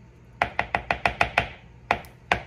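A metal spoon tapped rapidly against a plastic container, about seven quick taps in a second, knocking a scoop of mayonnaise off the spoon, then one more tap near the end.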